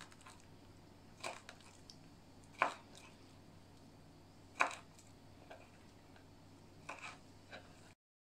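Chef's knife cutting lightly salted herring on a wooden cutting board: about five short, sharp knocks of the blade hitting the board, irregularly spaced a second or two apart.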